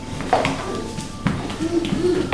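Adult-size leather shoes knocking and scraping on a ceramic tile floor as small children shuffle about in them: several sharp knocks, the loudest about a third of a second in, with short bits of child vocalising between them.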